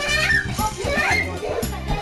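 Small children shouting and squealing as they play, with a high-pitched child's squeal right at the start, over pop music with a steady beat.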